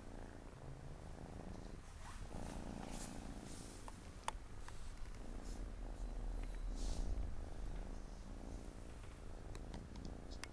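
Siamese cat purring steadily, heard very close, with a few short clicks and soft rustles of fur.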